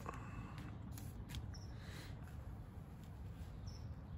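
Faint handling sounds of items being taken out of a package: a few light clicks and rustles about a second in, over a low steady rumble.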